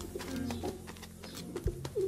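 Pigeons cooing in low, short calls, with a single sharp knock near the end.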